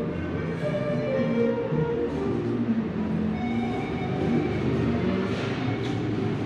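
Music with held, sustained notes, several sounding together, over a steady low hum.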